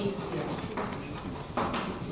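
Computer keyboard being typed on: a few irregular key taps.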